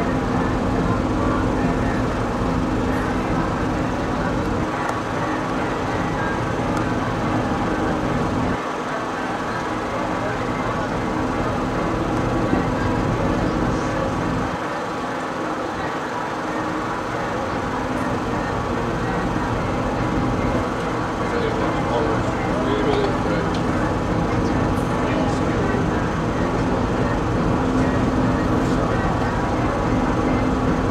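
Cruise boat's engine running steadily with a low hum, under a rumble of wind on the microphone that eases off briefly twice.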